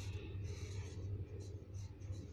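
Felt-tip marker scratching across paper in a series of short, uneven strokes as letters are written, over a steady low hum.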